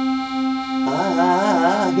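Hohner piano accordion holding a single C, its two reeds tuned slightly apart so the tone pulses about twice a second: the beating that accordionists call vibrato. About a second in, a wavering voice joins over the held note.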